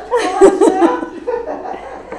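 A woman laughing: a quick run of chuckles, loudest in the first second, then trailing off.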